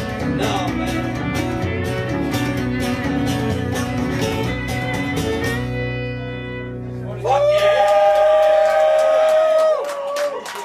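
Live country band with upright bass and guitar playing the last bars of a song with a steady beat, ending on a ringing final chord about halfway through. Near the end a loud voice holds one long note for over two seconds.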